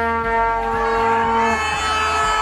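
A horn at a street march holding one long, steady, low note that stops about one and a half seconds in. A second, higher horn note starts near the end.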